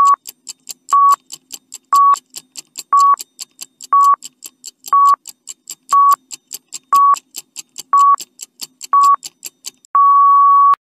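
Countdown timer sound effect: a short electronic beep once a second over fast clock-like ticking, about four or five ticks a second.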